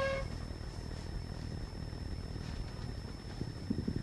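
Low room noise in a lecture hall during a pause in the Q&A, with a faint, steady high-pitched whine throughout. There is a brief held tone at the very start and a few soft knocks near the end.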